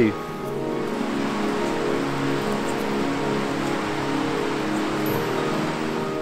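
Soft background music of slow, sustained chords in a new-age style, over a steady hiss that fades away near the end.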